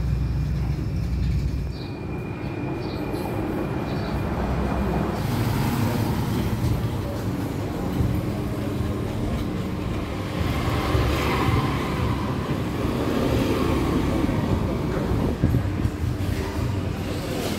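Roadside street ambience: a steady low traffic rumble with faint voices in the background, changing abruptly about two seconds in and again about five seconds in.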